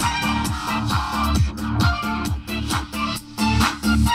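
Electronic music with a steady beat and deep bass notes that slide down in pitch, played together through four JBL PartyBox speakers (two PartyBox 300s and two PartyBox 100s) chained by aux cable.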